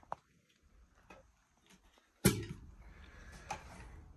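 Faint clicks and taps of wood and a miter saw being handled, then a sharp knock a little over two seconds in, followed by a faint low hum. The saw's motor does not run: it is still unplugged.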